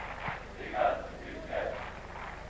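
Football stadium crowd shouting and chanting on a TV match broadcast's sound, with two louder swells of voices, about a second in and again near the end.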